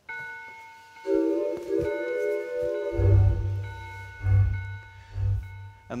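Lowrey Fanfare home organ playing: held notes and a sustained chord, then about three seconds in the auto-accompaniment style starts with a bass line and drum beat.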